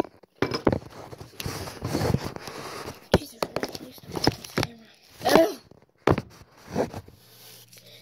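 Phone handled and shifted about close to its microphone: rubbing, rustling and a string of knocks and clicks, with a few short vocal sounds in between.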